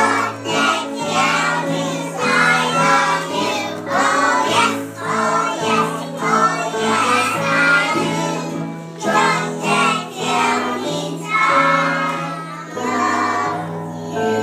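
A group of young children singing together over an instrumental accompaniment.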